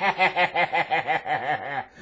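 A man laughing: a quick string of chuckles, about six a second, growing quieter and trailing off near the end.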